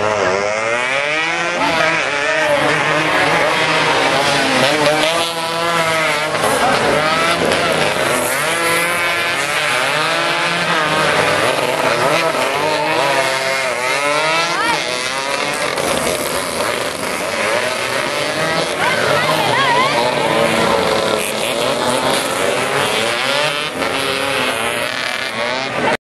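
Several small racing motorcycles running hard past the spectators, their engines revving up and dropping back again and again with each gear change, the rising and falling engine notes overlapping as bikes pass.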